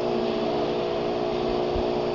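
Steady mechanical hum, several steady tones over a light hiss.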